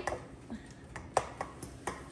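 A fork pricking pastry dough in a baking dish: a few light taps, with one sharper click a little past a second in as the tines strike the dish.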